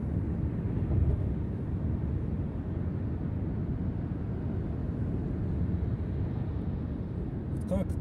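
Steady road and engine rumble of a car driving on a highway, heard from inside the cabin.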